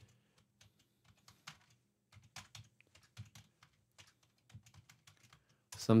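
Computer keyboard being typed on: a run of quiet, separate key clicks, a few a second and unevenly spaced.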